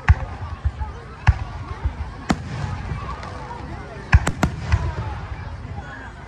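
Aerial firework shells bursting in a string of sharp bangs at irregular intervals, about ten in all, with a quick run of four about four seconds in. A crowd talks underneath.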